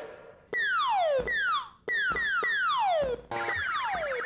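Electronic synthesizer tones gliding steeply down in pitch, repeating in overlapping groups with a brief gap between them. About three seconds in, a fast-pulsing higher electronic warble joins them.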